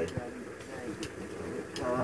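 Metal tongs clicking lightly a few times as corn cobs are set on a gas grill's grate, under brief murmured voices.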